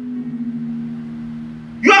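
A steady held low musical chord, a few notes sustained without change, until speech comes back in near the end.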